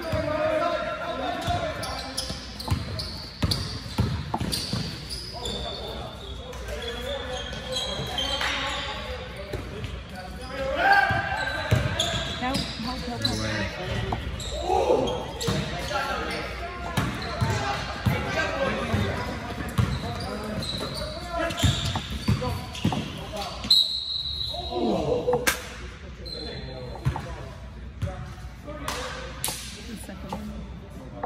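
A basketball bouncing on a hardwood gym floor as it is dribbled during play, with players' voices, all echoing in a large gym.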